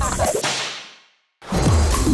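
A whoosh transition effect: the sound sweeps away upward into a brief silence about a second in. Then music with a heavy bass beat cuts in about a second and a half in.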